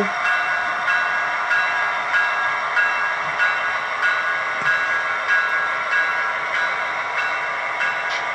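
Sound system of an HO-scale Athearn Genesis model diesel locomotive playing its diesel engine sound at low throttle, with the bell ringing steadily over it, about one and a half strokes a second.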